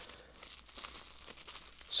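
Soft crinkling of plastic wrapping and rustling of a coiled cable bundle being handled, with scattered small crackles.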